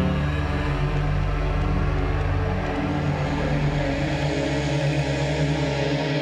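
Tense, suspenseful background score: steady sustained low droning tones with no clear beat.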